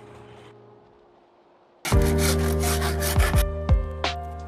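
A music chord fades to near quiet, then about two seconds in loud music with a beat starts, overlaid by a hoof rasp filing a horse's hoof in quick rough strokes.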